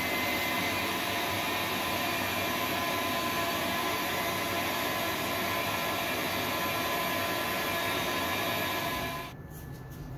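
Shop vacuum running steadily with a faint whine, its hose held close to the work; it switches off about nine seconds in.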